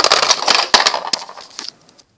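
Plastic toys clattering and knocking together as they are handled and moved quickly, a rapid run of clicks and knocks that dies away in the second half.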